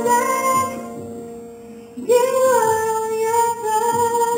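A woman singing a gospel song into a microphone with instrumental accompaniment; after a brief dip about halfway through, she holds one long note.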